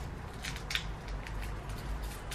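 Faint clicks and taps of fingers handling a small metal watch strap and its tiny screws while fitting it to a watch, over a low steady hum.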